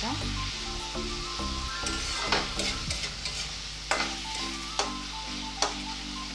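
Chopped tomatoes and onions sizzling in oil in a metal kadai, stirred with a metal spatula that scrapes against the pan about five times.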